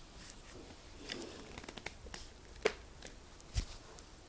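Hand handling and twisting a hard plastic ball casing: scattered light clicks and rubbing, with a sharper click and then a dull knock in the second half.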